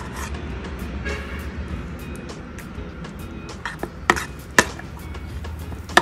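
Background music, with a metal spoon clinking and scraping against a stainless steel bowl as it stirs sticky steamed mochi dough with matcha paste. There are a few sharp clinks, the loudest a little past the middle and near the end.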